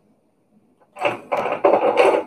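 Near silence for about a second, then small metal pins clinking as they are handled, together with some mumbled words.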